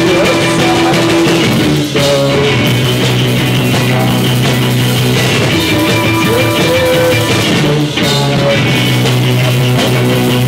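Indie rock band playing live, with electric guitars and drum kit. The sound is loud and dense throughout, with short dips about two seconds in and again near eight seconds.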